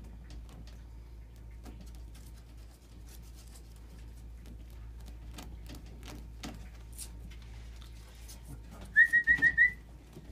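Faint scattered ticks and scratches, then near the end a person whistles five quick high notes, each with a slight upward flick, the kind of whistle used to call a pet.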